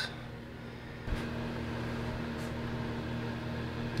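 A steady low mechanical hum from a running motor, which steps up slightly after a faint click about a second in.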